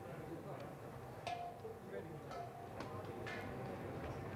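Faint background murmur of voices with light clicks about once a second, the low ambient sound of a busy pit garage.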